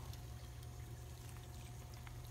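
Faint, steady trickling of water in a shallow, partly drained koi pond.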